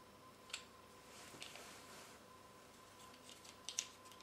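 Quiet handling of a fabric lampshade while it is screwed onto a lamp fitting: a single small click about half a second in, soft rustling, then a quick cluster of sharper clicks near the end, the loudest part.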